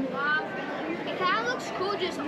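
Children's voices, high-pitched, talking and calling out over one another amid background chatter.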